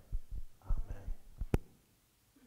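A man's footsteps as he walks off, heard as a series of dull low thumps, with one sharp click about one and a half seconds in.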